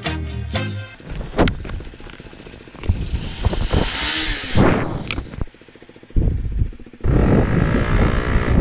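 Background music ends about a second in. A KTM Duke motorcycle's engine then runs and revs, rising and falling in pitch, with wind noise on the helmet-mounted microphone. It drops briefly a little past halfway and is loudest near the end as the engine revs up again.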